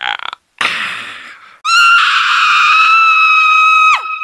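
A cartoon character's high-pitched scream, held steady for about two seconds from near the middle and dropping in pitch as it cuts off at the end. Before it, a short noisy burst fades away.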